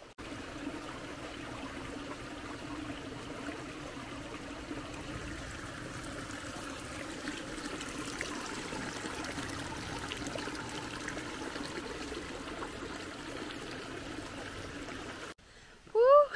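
Shallow rocky stream trickling steadily over stones, cutting off suddenly near the end.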